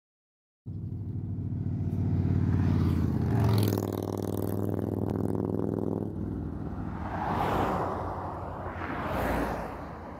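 A car engine running at a steady pitch, loudest about three seconds in and fading away by six seconds. Two vehicles then pass by on the road, each a swell of road noise, the second near the end.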